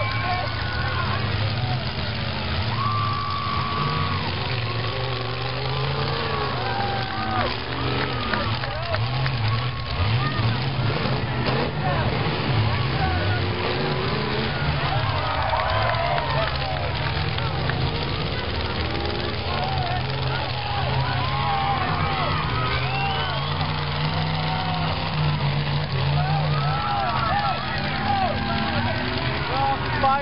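Demolition derby cars' engines running and revving, under the steady chatter and calls of a crowd of spectators close by, with a couple of thumps near the middle.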